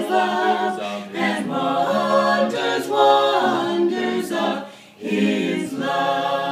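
Vocal quartet of two men and two women singing a Christmas carol a cappella in harmony. There is a short break for breath about five seconds in.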